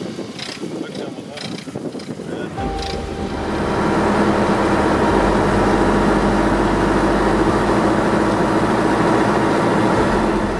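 Voices over a boat's hum for the first few seconds, then a motorboat's engine running steadily at speed with wind and water rushing past, louder from about three seconds in.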